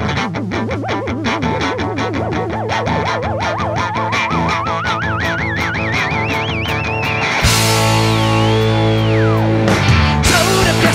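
Rock band intro: a rapidly picked electric guitar under a wavering tone that climbs steadily in pitch for about seven seconds. Then the full band, with drums and cymbals, comes in loudly, and the wavering tone dives down near the end.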